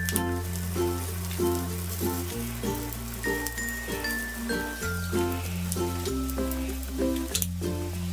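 Background music of held bass notes and a chiming, stepping-down melody, with oil sizzling underneath as cumin seeds and chopped green chillies fry in it for a tempering.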